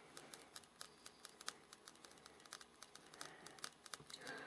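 A homemade putt-putt boat's steam engine running on its own, giving off faint, rapid, uneven clicking.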